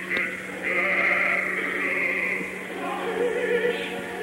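Operatic solo singing with orchestra from a live 1960 opera recording, in poor, dull-sounding audio with a steady low hum underneath.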